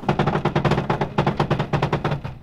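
A rapid, even mechanical clatter, about a dozen knocks a second, over a low steady hum.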